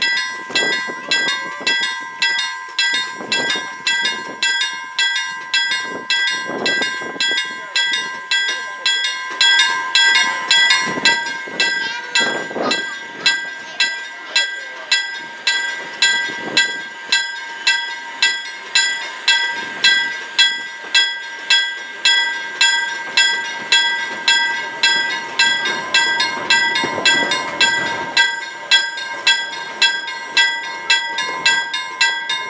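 Level crossing warning bell ringing steadily, just under two strokes a second, the warning for an approaching train. It is an old Finnish-style crossing warning device. A steam-hauled train of wooden passenger carriages rumbles over the crossing at the same time.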